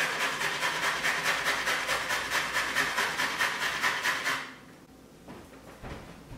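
Carrot being grated on the fine side of a stainless box grater: quick, even rasping strokes, about five a second, that stop about four and a half seconds in.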